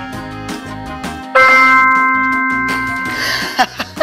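Light background music, then about a second and a half in a single loud bell-like ding that rings on and fades over about two seconds before cutting off.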